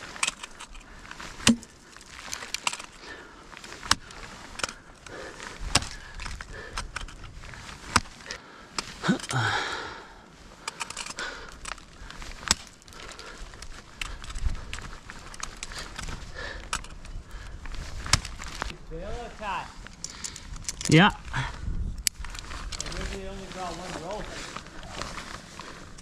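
Ice tools being swung into steep water ice: irregular sharp strikes of the picks biting in, along with kicks and the clink of metal climbing gear such as carabiners on a quickdraw. A few short vocal sounds, a grunt about two-thirds of the way through, break in among the strikes.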